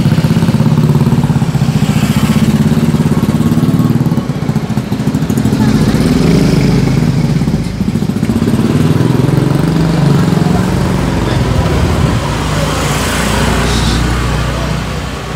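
Motorcycle engine running close by, a loud low rumble with an even pulse.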